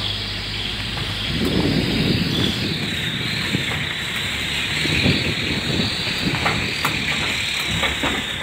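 A vehicle rolling slowly at low speed: a steady hiss over an uneven low rumble of engine and tyres.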